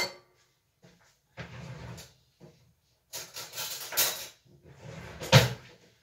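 A small glass jar set down on a granite countertop with a sharp knock, then several seconds of kitchen handling noise with a louder knock near the end.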